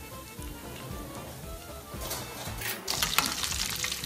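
Background music over meatballs frying in hot oil. About two seconds in the sizzling gets louder, with a slotted spatula scraping and stirring the meatballs in the pan.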